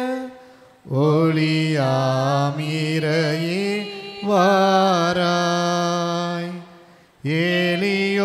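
A Tamil church hymn sung in long held notes, phrase by phrase, with brief pauses about a second in and near the end.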